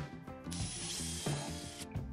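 Cordless drill running once for about a second and a half, starting about half a second in, its bit boring into a wooden board, over background music.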